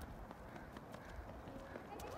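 Quiet outdoor ambience: a low rumble of wind on the microphone, faint irregular footfalls on asphalt and distant voices.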